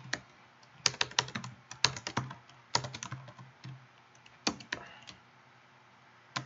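Typing on a computer keyboard: a few short runs of keystroke clicks with pauses between them, the last run a little before five seconds in.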